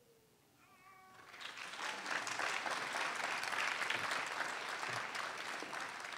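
Audience applauding, building up about a second and a half in and holding steady, just after a brief wavering high-pitched call near the one-second mark.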